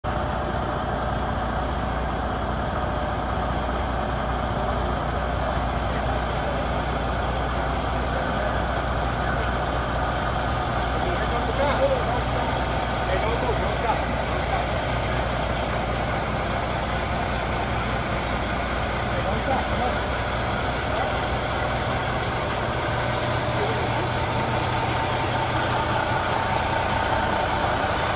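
Diesel engine of a semi truck running steadily at low speed close by, a constant low rumble, with scattered voices.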